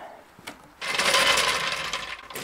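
Floor jack rolled across a concrete driveway, its metal wheels and handle rattling, starting about a second in.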